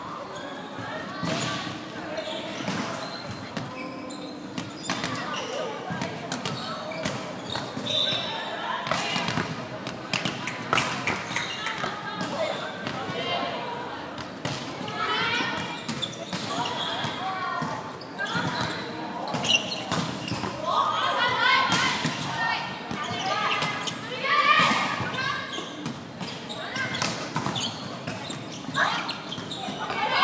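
Indoor volleyball play: the ball is struck and lands again and again, each sharp slap echoing in a large sports hall, mixed with players' voices.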